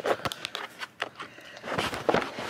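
Irregular clicks, taps and rubbing close to the microphone: handling noise as the camera is held up to the child's face.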